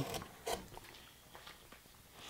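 Hand-pushed U-gouge (sweep 11) cutting into linden wood: one short scraping cut about half a second in, then only faint ticks.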